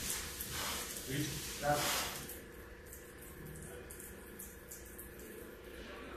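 Faint, indistinct voices for about the first two seconds, then a quiet stretch of low hiss and light rustling.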